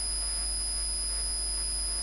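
Steady electrical hum with a thin, constant high-pitched whine, unchanging throughout.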